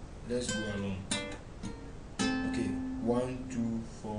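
Acoustic guitar picking single notes one after another, a slow run of about six notes, each struck sharply and left to ring.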